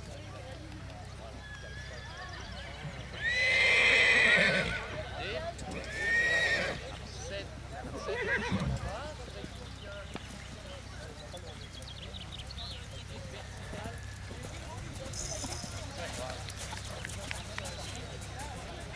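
Horse whinnying twice: a loud call about three seconds in, lasting over a second, and a shorter one about six seconds in. Hoofbeats of a horse cantering on sand run underneath.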